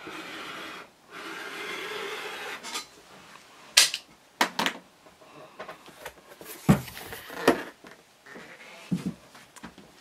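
A 45 mm rotary cutter blade rolling through fabric against the edge of an acrylic ruler on a cutting mat: a scratchy rasp in two strokes over the first three seconds. It is followed by a few light knocks and clatters as the acrylic ruler is handled and set down, and a soft rustle of fabric near the end.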